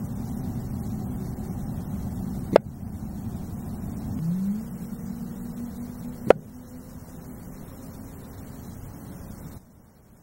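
Two single sharp cracks about four seconds apart, each a shot from a pre-charged pneumatic air rifle firing a pellet into a ballistics gel block, first a .177 and then a .22. They sit over a low steady rumble that rises briefly in pitch and then holds.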